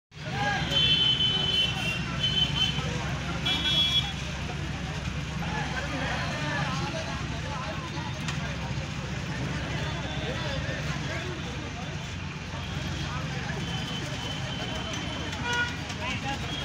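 Vehicle horns honking three times in the first four seconds, with one more short toot near the end. Underneath is continuous crowd chatter and a steady low traffic hum.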